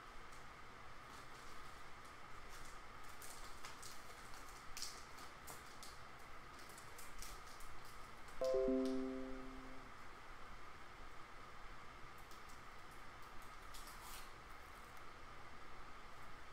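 Faint clicks and rustles of trading cards and plastic card holders being handled, over a steady faint hum. A little past halfway, a short chime of a few quick falling notes, about a second and a half long, is the loudest sound.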